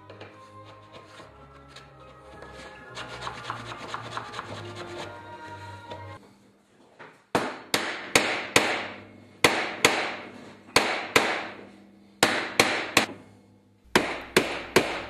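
Soft background music with held chords at first. Then, about seven seconds in, a wooden mallet starts striking a copper sheet laid over a grooved wooden template. About a dozen sharp, ringing blows come at roughly two a second with short pauses, hammering the copper into the grooves (repoussé).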